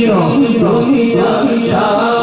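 A man singing a naat (Urdu devotional poem) into a microphone, unaccompanied, with long held notes and ornamented glides in pitch.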